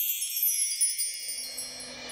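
Wind-chime sound effect in the background score: many high bell-like tones ringing together and slowly dying away. A soft swelling wash of noise joins about halfway through.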